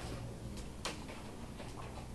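Quiet room tone with a faint steady low hum, broken by one sharp click a little before the middle and a few fainter ticks.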